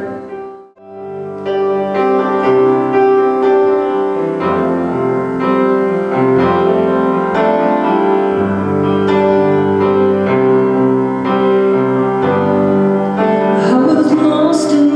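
Upright piano playing a slow chordal introduction to a song, beginning after a brief pause about a second in.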